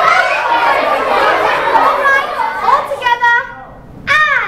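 A group of children's voices chattering and exclaiming over one another, excited and high-pitched. About three seconds in, one voice holds a short note, and then the group falls quieter.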